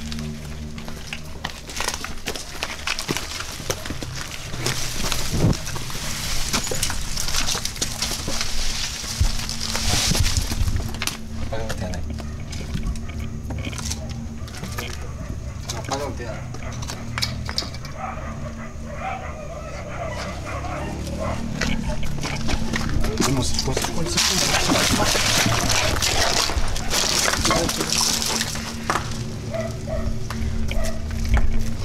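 People moving through dry brush at night, with many small cracks and rustles of twigs and leaves, and indistinct low voices. A steady low background music drone runs underneath.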